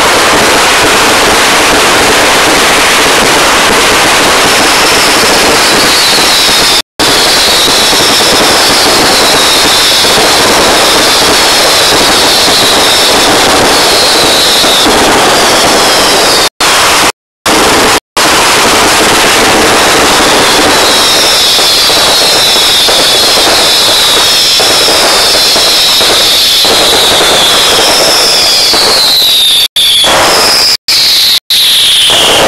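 A dense, continuous barrage of festival fireworks and firecrackers, very loud and overloading the recording, with repeated high falling whistles over it. The sound cuts out for brief moments several times, mostly around the middle.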